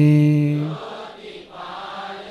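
A monk chanting a Sinhala Buddhist verse, ending on a long held note under a second in; then a congregation chanting the line back together, fainter, many voices blended.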